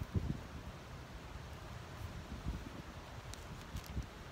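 Wind rumbling on the microphone, in a few low gusts, over faint outdoor hiss.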